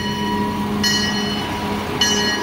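Amusement-park train with the locomotive Texas running by over a steady low hum, while a bell rings at a steady pace of about one stroke a second, each stroke ringing on briefly.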